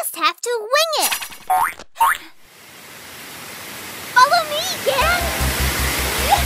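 Cartoon sound effects: a character's vocal sounds, then a springy boing a second or so in, followed by a rising rush of water that builds through the middle. Squeals and laughter come in after about four seconds, and music with a steady beat starts near the end.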